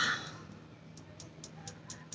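A breath fading out just after the start, then quiet room tone with a few soft clicks from fingertips tapping together during EFT tapping.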